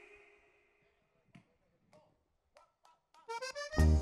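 Almost silent for about three seconds, with only a few faint clicks. Then an accordion starts the song's intro with quick notes that step upward, and the full band with bass comes in loudly just before the end.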